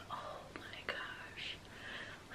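A woman whispering softly, with no voiced speech.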